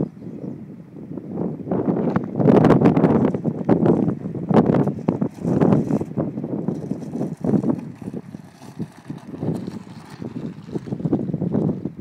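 Wind buffeting a phone microphone in loud, irregular gusts.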